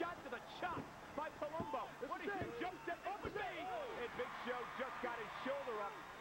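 Men's voices talking steadily over an arena crowd's murmur, with a few sharp thuds from the wrestling ring.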